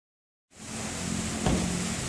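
Steady background hiss with a low hum, fading in after about half a second, and a single short knock about one and a half seconds in.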